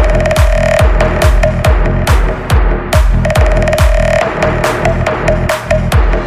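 Vinahouse dance music: a heavy, steady kick drum at a little over two beats a second under a rolling bassline and a repeating synth note.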